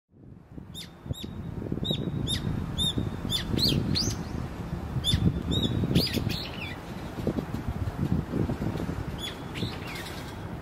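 Small birds chirping: a dozen or so short, sharp chirps, roughly one or two a second and a few in quick pairs, over a low, uneven rumble.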